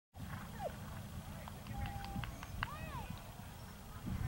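Outdoor field ambience: a steady low rumble of wind on the microphone, with faint distant voices and a few short high chirps and clicks.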